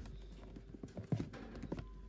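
A few soft, irregular taps and knocks of handling noise.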